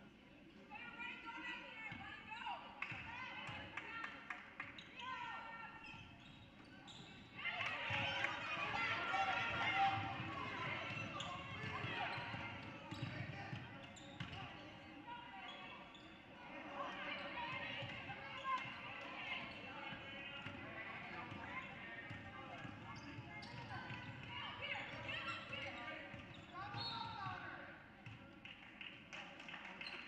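A basketball bouncing on a hardwood gym floor, with scattered short knocks, under the constant chatter of a crowd in a gym. The crowd noise swells sharply about seven seconds in and stays up for several seconds.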